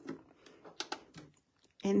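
Several light, irregular clicks and taps, then a woman starts speaking near the end.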